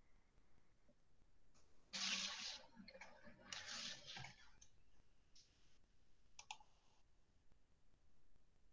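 Near silence: room tone, with two faint brief rustling noises early on and a single small click later.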